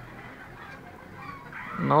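Caged fancy chickens clucking faintly, with a man's voice starting near the end.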